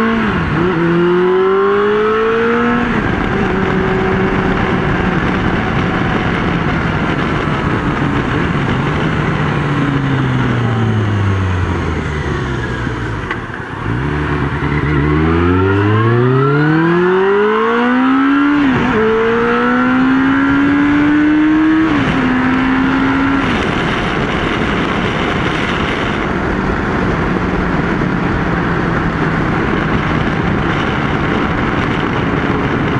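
Motorcycle engine heard from inside the helmet over steady wind noise, pulling up through the gears: its pitch climbs and drops at each shift in the first few seconds, falls away slowly toward the middle as the bike slows, then climbs through several more shifts before settling into a steady cruise for the last few seconds.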